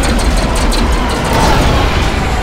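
TIE fighter engine sound effect as the fighters fly past: a loud rushing howl that swells to a peak about a second and a half in.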